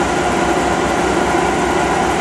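A steady mechanical drone from the running test rig, a car alternator with its diodes removed, driven to power a nine-coil system, with a regular low pulsing beneath a steady hum.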